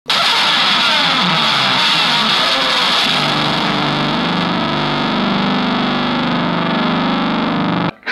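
Loud wall of heavily distorted, effects-laden electric guitar noise: a dense hiss at first, with low sustained droning notes coming through after about three seconds, then cutting off suddenly.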